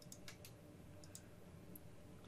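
Near silence with about half a dozen faint, short clicks of a computer mouse, scattered through the pause.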